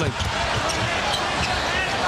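Arena crowd noise during a live basketball game, with a basketball bouncing on the hardwood court and sneakers squeaking.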